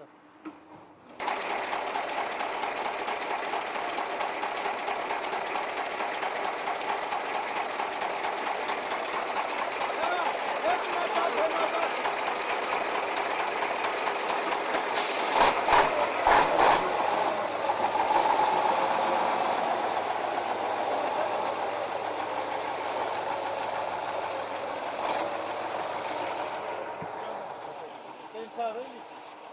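A truck engine idling with a steady, even clatter while men talk over it; a few sharp clicks about halfway through.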